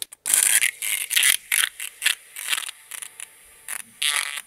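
A thin metal stirring rod scraping around a small plastic cup, stirring a mix of water-based airbrush paint, reducer and clear. The scrapes come in irregular short strokes with brief pauses between them.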